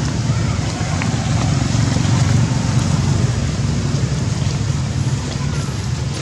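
Steady low rumble and hiss of outdoor background noise, with a few faint short high squeaks.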